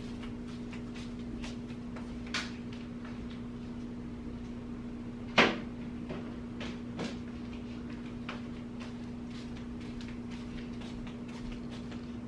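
A cupboard door shutting with one sharp knock about five seconds in, with a smaller knock a couple of seconds earlier and faint clicks of things being handled, over a steady low hum.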